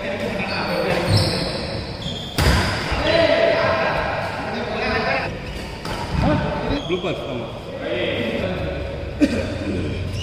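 Doubles badminton rally in an echoing hall: racket strikes on the shuttlecock and players' shoes on the court. The sharpest hits come about two seconds in and near the end, with players' voices throughout.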